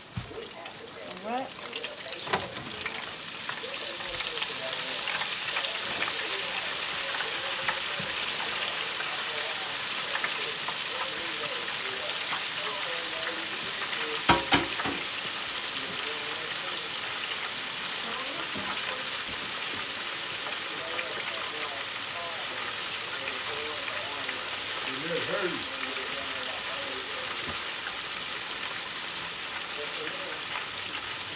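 Battered chicken deep-frying in hot oil in a Farberware electric deep fryer: a steady sizzle that builds over the first few seconds and then holds. Two sharp clicks come a little past halfway.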